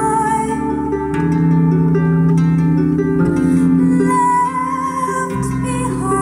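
Live band music: a woman sings held notes over electric bass, drums and plucked harp.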